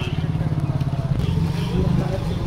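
Men's voices murmuring over a low, steady rumble with a fast, even pulse, a little louder near the end.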